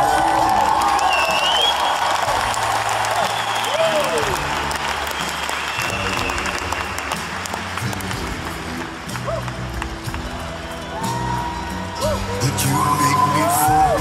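A live band of bass guitar, acoustic guitar and drums playing while a concert audience claps along; the clapping thins out after about eight seconds.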